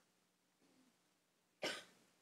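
A single short cough, sudden and loud against near-silent room tone, about a second and a half in.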